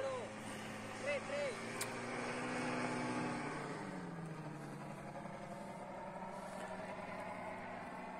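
Small motor droning overhead, the engine of a powered paraglider, its pitch sliding down about three and a half seconds in as it passes by.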